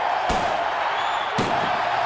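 Two pistol shots about a second apart, over a steady background din.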